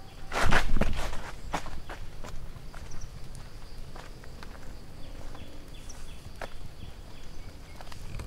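Footsteps on a wet, leaf-strewn concrete path: a loud cluster of scuffing steps about half a second in, then single, spaced-out steps. A faint, high, steady hum with small chirps runs underneath.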